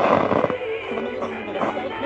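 Several small radios playing different stations at once through their little speakers: music and talk overlap into a dense, continuous jumble.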